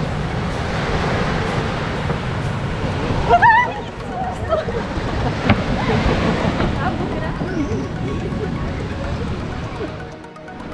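Steady wash of waves and wind with scattered people's voices, a short high-pitched voice cry about three and a half seconds in, and a single sharp click near the middle.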